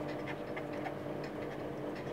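A felt-tip marker writing on paper, heard as faint short scratching strokes over a steady low hum.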